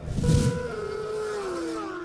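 Racing motorcycle engine: a sudden loud burst, then a steady high engine note that slides down in pitch about halfway through.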